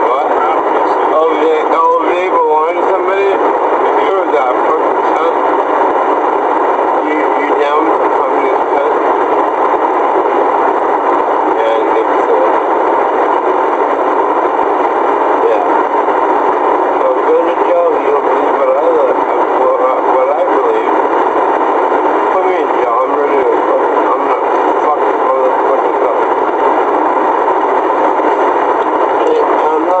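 Loud, steady hiss in a police car's in-car camera recording. Muffled voices come through it now and then and cannot be made out.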